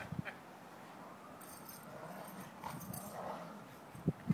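Faint sounds of two dogs play-fighting in snow, with a few short clicks just after the start.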